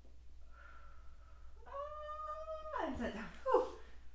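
A cat meowing: a long, high, drawn-out meow that falls in pitch at its end, followed by a shorter, louder falling meow near the end.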